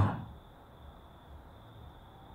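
A pause in a man's soft speech: the last word trails off at the very start, then only faint microphone hiss with a thin, steady high-pitched tone.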